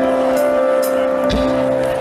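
Live band music: sustained keyboard chords on a Nord Stage 3 over a slow drum beat with cymbals, a kick drum landing about a second and a half in.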